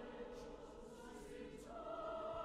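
Large mixed chorus of men's and women's voices singing held chords, a little softer in the middle with brief hissed consonants, then swelling into a louder new chord near the end.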